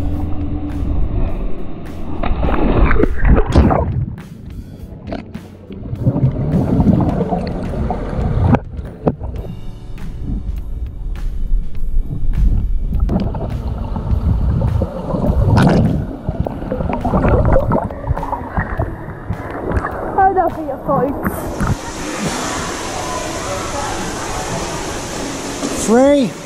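A swimmer jumping into a swimming pool, heard through an action camera that goes underwater: a splash a few seconds in, then muffled sloshing and gurgling of water. About 21 seconds in the camera comes up and a steady hiss of the indoor pool takes over.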